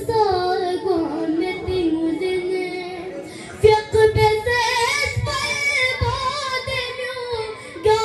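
A boy singing a manqabat (a devotional poem) into a microphone, unaccompanied, in long gliding held notes. A few low thumps sound under his voice in the second half.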